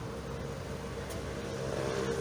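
A black Nissan minivan's engine running as the van rolls slowly forward at low speed, a steady low hum.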